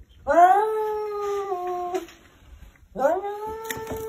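Domestic cat yowling at another cat in a face-off, the aggressive caterwaul of a cat fight about to start. Two long calls: the first rises, holds and steps down in pitch, ending about two seconds in; the second starts about three seconds in and is still going at the end.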